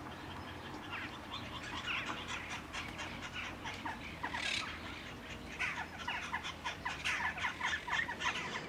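White storks at their tree-top nests, giving quick runs of sharp clicks and short chirps that grow more frequent in the second half, typical of a stork colony's bill-clattering.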